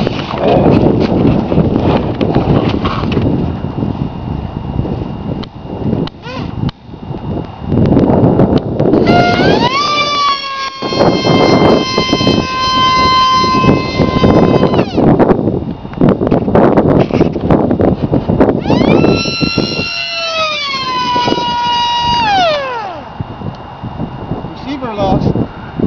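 Mega 16/25/3 brushless motor and propeller of an 8-cell electric flying wing whining at full power in two high-speed passes, about nine seconds in and again about nineteen seconds in: a high whine with overtones that rises, holds, then drops in pitch as the plane goes by. A heavy rumble of wind on the microphone runs underneath.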